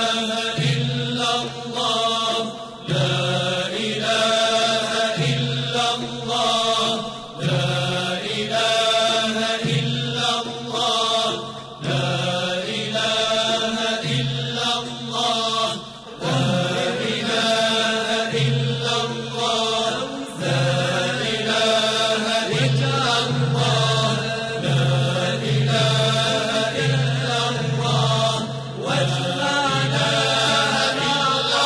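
Devotional vocal chanting: a melodic chant sung in phrases of a second or two each, with short breaks between them.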